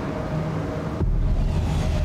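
Science-fiction city ambience from a TV soundtrack: a steady low drone under a wash of hiss, with a deep rumble coming in about halfway through.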